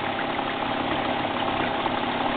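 Dirt bike engine idling steadily.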